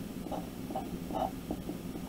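Sharpie fine-point marker writing on paper in several short, separate strokes, over a steady low hum.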